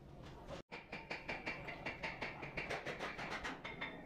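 Rapid metallic clicking of hand-tool work, several clicks a second, after a brief gap in the sound about half a second in.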